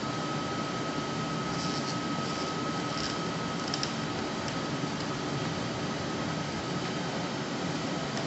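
Steady fan-like air-handling noise with a faint high steady tone running through it, and a few faint light clicks about two to four seconds in, consistent with plastic tubing connectors and stopcocks being handled.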